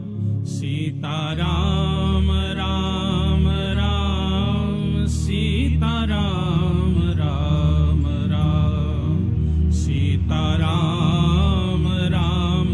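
Devotional music: a chanted, melodic vocal over a steady low accompaniment.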